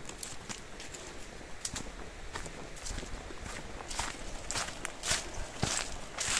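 A hiker's footsteps on a wet, muddy trail: irregular steps with rustling, louder in the last two seconds.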